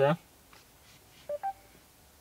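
A short two-note electronic chime from the Mercedes-Benz MBUX voice assistant about a second and a half in, the second note higher than the first: the system's cue that it has taken the spoken question.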